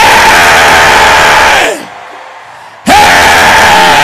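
A man's voice shouting two long, held cries through a microphone and PA system, each about two seconds long and dropping in pitch as it ends. Both are at full level, loud enough to clip.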